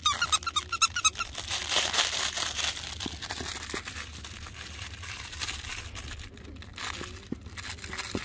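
A plush dog squeaky toy squeaked rapidly over and over for about the first second, followed by a softer crinkling rustle as the toy is handled and the puppies grab at it.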